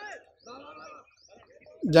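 Faint bird calls in the background, two short calls in the first second; a man's voice starts just before the end.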